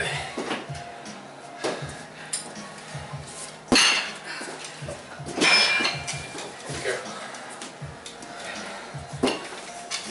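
Metal Rack Attack exercise frames clanking and rattling as they are lifted and set down on the mat: a string of sharp metallic knocks and clinks, the loudest about four seconds in.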